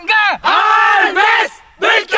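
A group of men shouting together in excitement: a short shout, then a long drawn-out cry lasting about a second, and another shout starting near the end.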